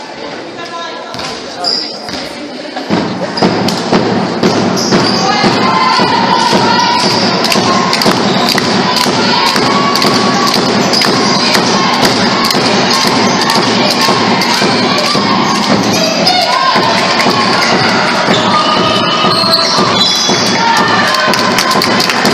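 Basketball game noise in a sports hall: a dense din of crowd voices with sharp thumps two or three times a second, swelling to full loudness about three seconds in.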